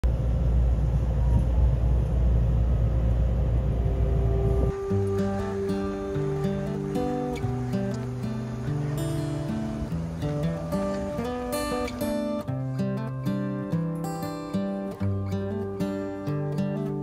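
A train carriage interior rumbles steadily for about the first five seconds. It is cut off sharply by acoustic guitar music, single picked notes at first, turning to strumming after about twelve seconds.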